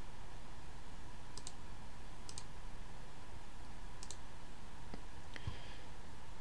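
A few faint computer mouse clicks, several of them quick pairs, spaced a second or two apart, over a steady low hiss.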